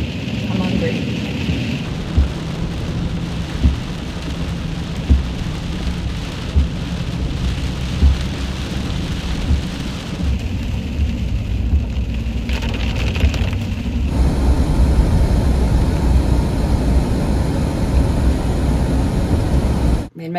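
Camper van cabin noise while driving on a wet, snowy road: a steady low rumble with hiss, and a soft low thump about every second and a half. The hiss grows and the noise gets a little louder about two-thirds of the way through.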